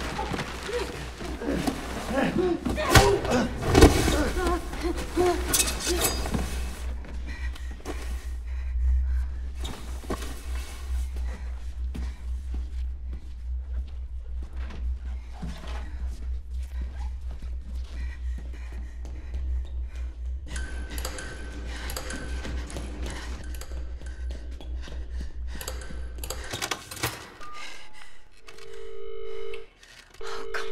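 Horror film soundtrack: a few heavy thuds in the first seconds, then a steady low rumbling drone in the score. Near the end the drone stops and a steady two-note telephone line tone sounds from a handset, breaking off briefly and starting again as a call is placed.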